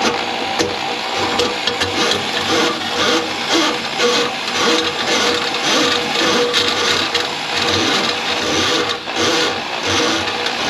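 Electric drum drain cleaning machine running, its spinning cable fed into a kitchen drain line clogged with grease. The motor hums steadily while the cable rattles and clatters unevenly.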